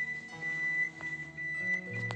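Background instrumental music: a high flute note held steadily over lower notes that step from one pitch to the next, with plucked strings, in the manner of Sundanese suling music.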